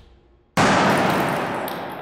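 Homemade potato cannon bursting from the pressure of evaporating liquid nitrogen: one sudden loud bang about half a second in, its echo dying away slowly in a large hall. The chamber burst rather than firing, leaving the potato in the barrel.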